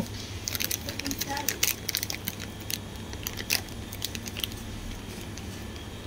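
A run of small, sharp clicks and light rustles, thickest in the first half and thinning out later, over a steady low hum.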